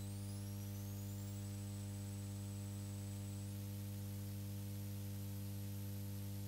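Steady electrical mains hum on the recording, with a faint high-pitched whine that rises over the first second and a half, then holds, and jumps higher about halfway through.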